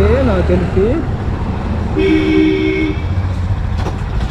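Motorcycle engine running at low speed, with a steady low rumble. About two seconds in, a vehicle horn sounds once, a flat steady tone lasting about a second.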